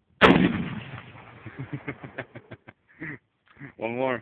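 A single shot from an M44 Mosin-Nagant carbine in 7.62×54R about a quarter second in, very loud and sharp, its echo dying away over the next second or so. A short voice follows near the end.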